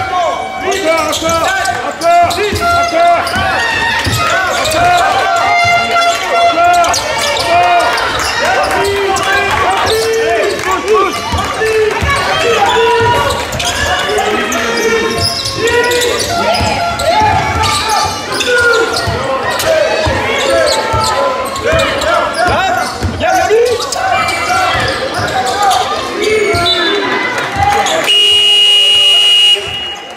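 Basketball game in a gym: a ball bouncing on the hardwood court, sneakers squeaking and voices shouting. Near the end a long, steady electronic buzzer sounds for about two seconds and cuts off suddenly, after which play stops.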